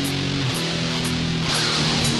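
Heavy metal song intro: electric guitar playing held chords that change about twice a second, with light high ticks keeping time. A rising sweep comes in near the end.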